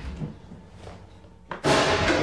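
A sudden loud thud about one and a half seconds in, followed by a fading tail.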